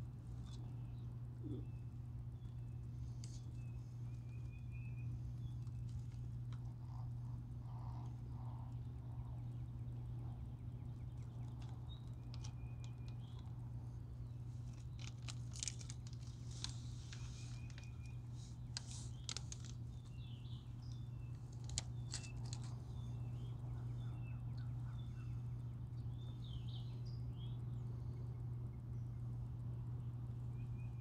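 Wild birds calling: a short high trill repeats every several seconds among scattered chirps. A steady low hum runs underneath, and a cluster of clicks and rustles comes in the middle.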